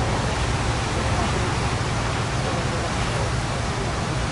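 Norfolk & Western 611, a Class J 4-8-4 steam locomotive, working hard to pull its excursion train up a grade. It makes a steady rushing hiss over a deep rumble, with no distinct exhaust beats.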